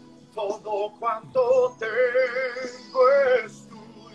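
A man singing a slow worship melody in several short phrases, holding the longer notes with vibrato.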